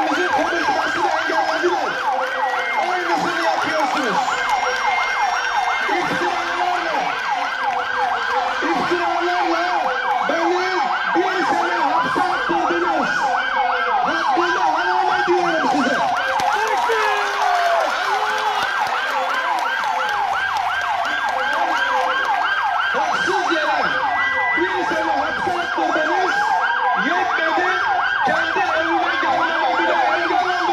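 Several police vehicle sirens sounding together: a fast yelp repeating several times a second, slower wails rising and falling every few seconds, and a steady high tone. The sirens are kept going continuously to drown out a man speaking to a crowd.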